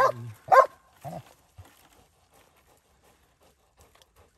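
Belgian Malinois baying a hog, barking at it where it is held in the brush: two sharp barks in the first second and a weaker, lower bark just after.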